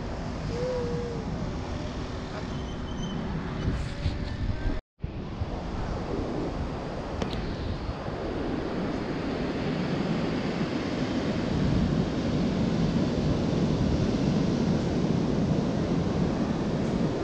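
Sea waves breaking on a sandy beach, a steady rushing wash that grows louder through the second half, with wind buffeting the microphone. It is preceded by a few seconds of quieter seafront ambience that cuts to silence for an instant at an edit.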